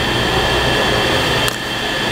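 Steady background noise with a low hum and faint high steady tones, with a faint click about one and a half seconds in.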